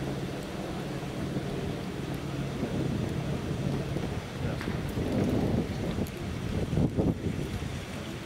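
Wind buffeting the microphone outdoors over a low steady hum. The rumble grows in gusts about five to seven seconds in.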